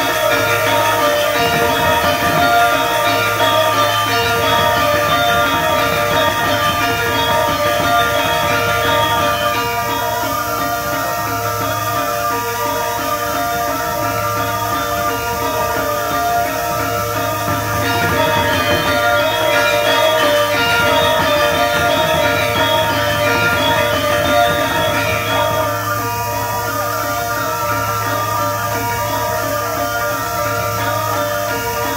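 Balinese gamelan music accompanying a dance. Bronze metallophones play fast, dense figures over a low, droning tone that comes and goes.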